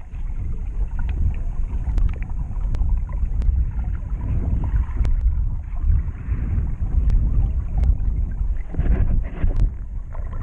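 Muffled underwater rumble of water moving around the action camera's housing, with scattered sharp clicks and ticks and a louder rush near the end.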